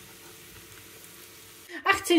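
Choux-pastry rings deep-frying in a small pan of hot vegetable oil: a faint, steady sizzle. A woman starts speaking near the end.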